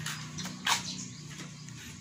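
A plastic cup of dry cat kibble being picked up, with a sharp clatter of the kibble shifting inside about two-thirds of a second in and a couple of lighter clicks just before it.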